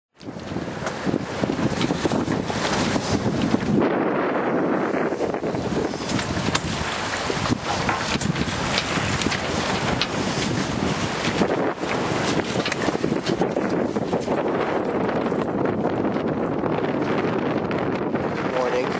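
Wind gusting hard on the microphone aboard a Pearson 36 sailboat under way, with water rushing along the hull beneath it.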